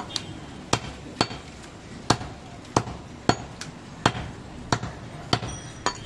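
Heavy cleaver chopping goat meat on a wooden log chopping block: about ten sharp chops, roughly two a second at an uneven pace.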